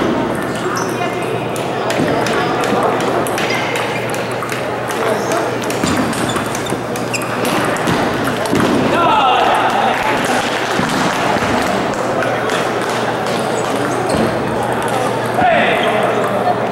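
Table tennis ball clicking off paddles and the table in quick exchanges, with background chatter of voices.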